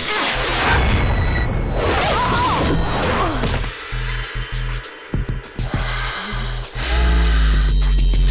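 Animated-series action soundtrack: dramatic music under sudden crash and whoosh sound effects, two of them in the first three seconds, with a deep rumble swelling near the end.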